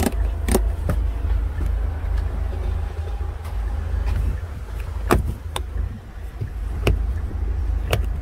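Sharp plastic clicks of buttons, switches and a flip cover being pressed in an SUV's cargo-area trim: a few near the start and more from about five seconds in. A steady low rumble runs underneath.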